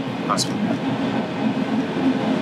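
Engine and road noise of a moving bus heard from inside the passenger cabin: a steady low rumble.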